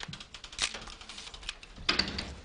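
Irregular clatter of small clicks and taps, with louder strikes about half a second in and near the end.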